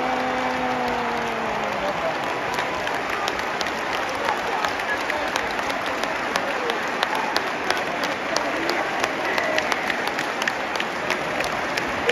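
Packed football stadium crowd cheering and applauding a home goal. Shouts ring out early on, then sharp hand claps close by stand out over the crowd from a few seconds in.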